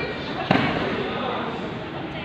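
A single sharp smack about half a second in, ringing briefly in the large hall, over steady crowd voices.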